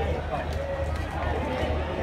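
Voices of people around a football pitch talking and calling out, over a steady low hum.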